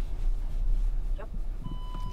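Low, steady rumble inside the cabin of a Skoda Kodiaq crawling over rough dirt. Near the end a parking-sensor warning tone comes on as one continuous high beep, the sign that an obstacle or the bank is very close to the car.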